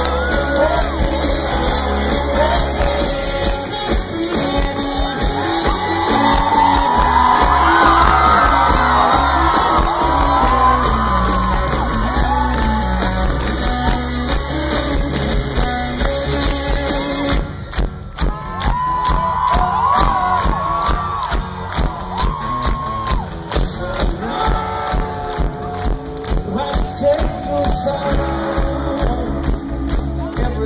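Live rock band playing, heard from the audience: electric guitars, bass, drums and keyboard with singing and some crowd shouts. Just past halfway the arrangement drops to a sparser part carried by a steady drum beat.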